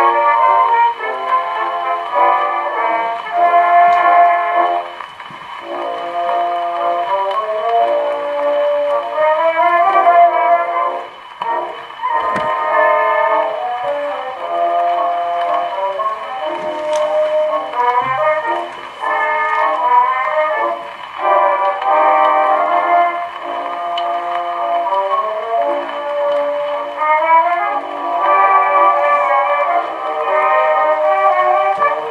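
Brunswick wind-up phonograph playing an old 78 rpm record: recorded music with a pitched melody, thin in sound with little bass or treble.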